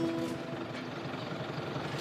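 Fendt tractor's diesel engine running steadily as it tows a cattle trailer, an even engine noise without clear pitch.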